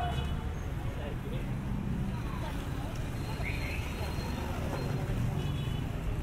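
Street ambience: a steady low rumble of motorcycle and tricycle engines running, with people's voices talking in the background.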